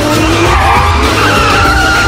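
Open-wheel race car engine revving with rising pitch and tyres squealing as the car is steered hard, with film score music underneath.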